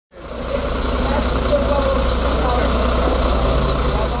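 Box truck's diesel engine idling with a steady low rumble, with people's voices talking in the background.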